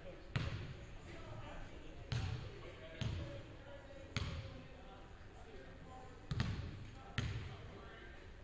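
A basketball bounced on a hardwood gym floor, about six separate bounces at uneven intervals, each echoing in the large gym.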